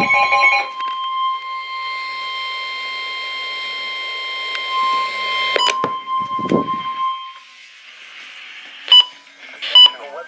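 Midland weather radio sounding a steady single-pitch warning alert tone for several seconds over a hiss. The tone stops about seven seconds in, and near the end come a few short beeps from its buttons being pressed.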